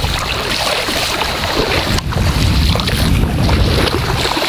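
Wind buffeting the microphone over open estuary water: a steady, loud rumbling rush that grows heavier about halfway through.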